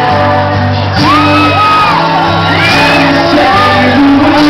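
A pop-rock band playing live, loud, with the male lead singer holding long, arching sung notes over the band.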